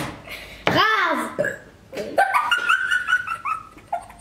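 A girl laughing: a high, squealing laugh about a second in, then a run of quick, high-pitched giggles.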